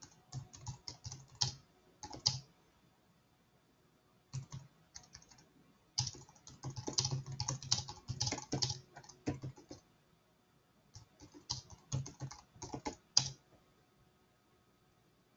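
Typing on a computer keyboard in four quick spurts of keystrokes, with pauses of one to two seconds between them, as a sentence is typed out.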